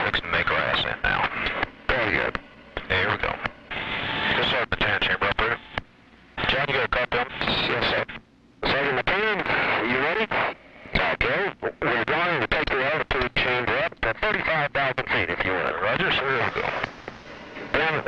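Speech over an altitude-chamber intercom, thin and crackly and hard to make out, broken by frequent clicks.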